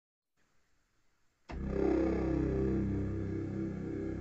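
Near silence, then about a second and a half in an electronic keyboard sounds a held chord with deep bass notes that stays at a steady level rather than dying away.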